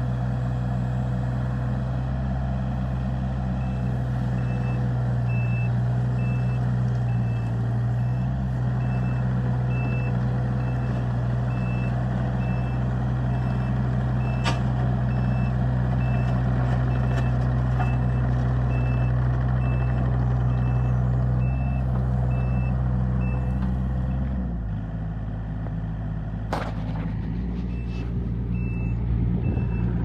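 Hitachi ZX35U-2 mini excavator's diesel engine running steadily, with its travel alarm beeping about once a second as the machine tracks. About three quarters of the way through, the beeping stops and the engine note drops. A sharp knock comes shortly after, and the beeping starts again near the end.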